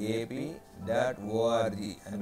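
A man's voice speaking in short phrases, only speech.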